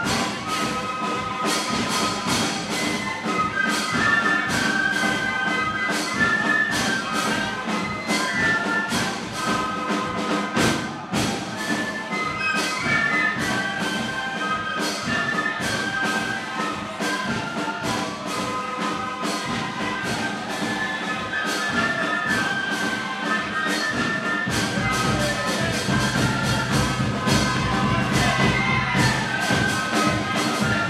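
Brass band music: a brass ensemble playing a sustained hymn melody over a steady beat.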